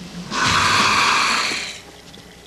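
A person's long, breathy hiss of air through the mouth, about a second and a half long, rising in quickly and fading out near the end.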